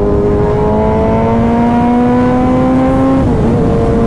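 Onboard sound of a sport motorcycle's engine and exhaust pulling hard through a gear, its pitch climbing steadily. About three seconds in, the revs drop sharply and the engine then runs on at a steady pitch, with wind and road rush underneath.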